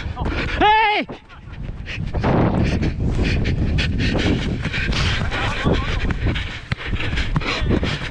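A short shouted call about half a second in, then the sounds of a football player running on artificial turf: footfalls, heavy breathing and wind buffeting a body-worn camera microphone, with occasional short knocks of the ball being played.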